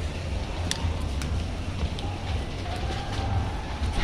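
Footsteps on stone paving, with a few sharp clicks about a second in, over a low, steady rumble on the handheld microphone.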